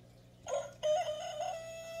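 Rooster crowing: one long crow that starts about half a second in, with a short rising opening note and then a long note held on a steady pitch.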